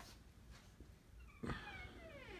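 A cat meowing: one long call that starts past the middle and falls in pitch, with a sharp click as it swells.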